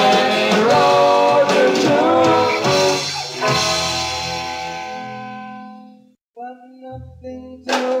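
Live rock band recording: a voice singing over guitar and drums, then a held chord that fades away to near silence about six seconds in. A few quiet notes follow before the full band comes back in loudly near the end.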